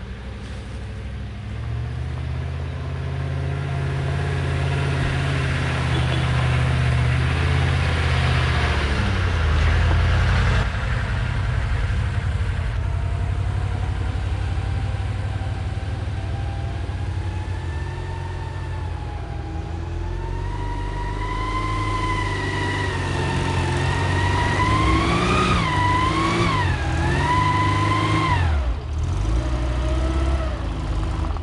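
Steyr-Puch Pinzgauer off-road truck grinding slowly uphill on a dirt track, its engine working at low revs. In the second half a high whine comes in over the engine, rising and dipping a few times with the throttle as the truck draws near.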